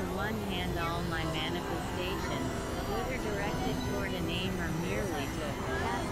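Dense experimental synthesizer drone and noise, with warbling, gliding voice-like sounds layered over it that never form clear words.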